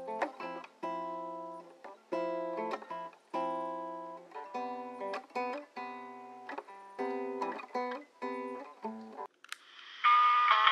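Acoustic guitar played slowly, a phrase of single plucked notes and chords that each ring and fade, stopping shortly before the end.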